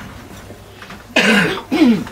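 A man clearing his throat twice: a longer, louder clear a little over a second in, then a shorter one right after it.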